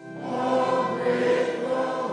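A church congregation singing a hymn together. A new phrase swells in just after a brief pause at the start.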